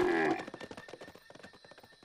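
A music cue ends about half a second in. Then comes a quick patter of a cartoon llama's hoofbeats that fades away to near quiet.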